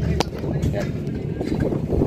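Steady low rumble of construction-site noise while a scaffold is being dismantled, with one sharp knock about a fifth of a second in. A man briefly says "ya".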